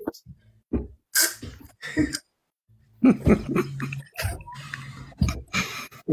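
Short, unworded vocal bursts from people on a live video call, including a sharp breathy burst about a second in, then a brief silence and more voice sound.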